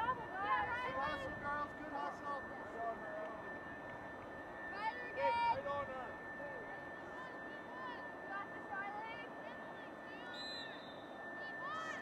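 Scattered distant shouts and calls from several voices across a lacrosse field, short rising-and-falling yells that overlap, with a cluster of them about five seconds in. A faint steady high-pitched tone runs underneath.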